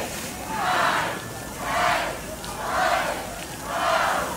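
A group of people chanting together in a steady rhythm, one loud shout about every second.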